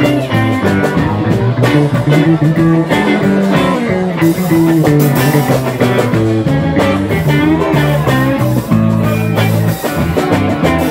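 Live blues-rock band playing an instrumental passage: electric guitar lines with bending notes over electric bass and a drum kit.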